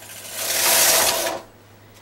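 Singer Mod 155 flatbed knitting machine carriage pushed once across the needle bed, knitting a row: a noisy mechanical run of about a second that stops abruptly.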